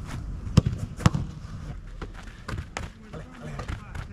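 Sharp thumps of a football being struck and met: two loud thumps about half a second apart near the start, then a few lighter knocks.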